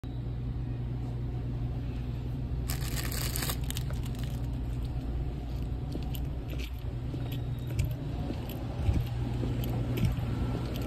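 Steady low hum of a convenience store interior, with light handling clicks and a brief rustle about three seconds in.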